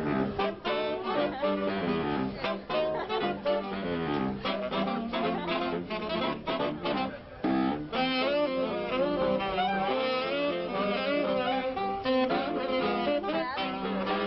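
A live saxophone quintet, baritone saxophone among them, plays an upbeat jazz tune, with a short break about seven and a half seconds in before the next phrase.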